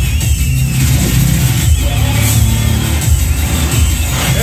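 Film trailer soundtrack playing loud through a home theatre speaker system: electronic music with heavy, continuous bass.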